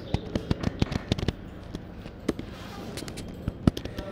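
Computer keyboard keys being typed. There is a quick irregular run of clicks in the first second or so, then scattered single keystrokes, the sharpest near the end.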